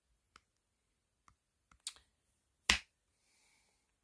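Phone handling noise close to the microphone: about six short, sharp clicks and taps, the loudest about two-thirds of the way in, followed by a faint brief rustle.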